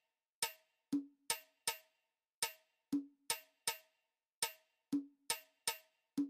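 Background music made only of sparse percussion: short, quiet knocking hits with a light pitched ring, in a four-hit pattern that repeats about every two seconds.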